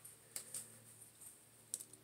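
Faint rustling and a few soft clicks as hands pull an elastic hair tie out of a ponytail, with a cluster of clicks near the end, over a low steady room hum.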